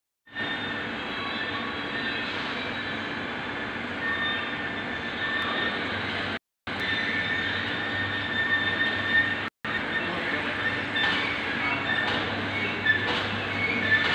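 Steady workshop machinery noise with a low hum and high whining tones, cutting out abruptly twice for a moment.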